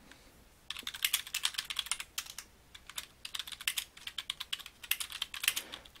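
Fast typing on a computer keyboard, a quick uneven run of key clicks starting just under a second in and going on until just before the end.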